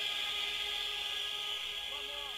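Quiet, steady electronic drone of several held tones over tape hiss, with no beat: a lull between tracks of a rave set recording.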